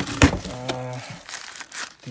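Tissue paper crinkling and rustling as wrapped accessories are pulled out and handled, with a sharp crackle shortly after the start.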